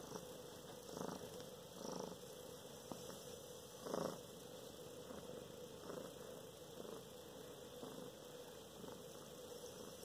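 Domestic cat purring softly and steadily while having its chin scratched, the purr swelling gently about once a second.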